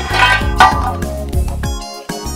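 Instrumental background music with repeated low bass notes and a melody on top, louder and brighter in the first half-second.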